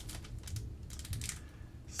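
Foil booster-pack wrapper crinkling and tearing as it is pulled open by hand, a run of small irregular crackles.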